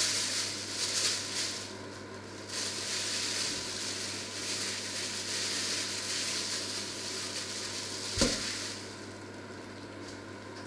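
Oil sizzling in a hot black steel pan on a hob, over a steady low hum. A single sharp knock comes about eight seconds in, after which the sizzle dies down.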